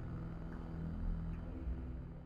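Deep, steady rumbling drone with a few held low notes, the sound design of an animated logo outro.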